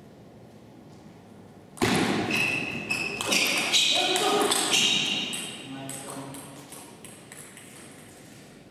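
Table tennis rally: the celluloid-type ball clicking off rubber bats and the table, many quick hits in a row, with sharp high squeaks and a player's shout, starting suddenly about two seconds in and dying away near the end as the point is won.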